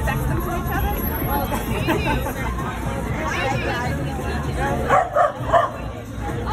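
Outdoor crowd chatter, with a dog barking about three times in quick succession near the end.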